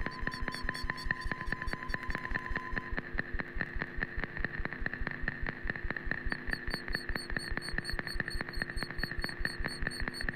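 No-input mixing: a mixing desk with its outputs fed back into its own inputs, making electronic feedback music. A rapid, even pulsing runs under a steady high tone. A second tone drops out about three seconds in, and a high, fast-pulsing layer comes in around six seconds.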